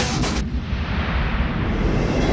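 Animated battle sound effects: a few sharp impact hits, then a deep rumbling boom like a blast that carries on.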